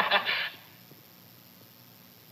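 A voice finishing a spoken line in the first half second, then a pause with only faint background hiss.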